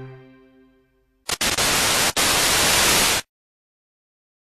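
Music fading out, then a loud burst of static hiss lasting about two seconds, with two brief breaks in it, that cuts off suddenly.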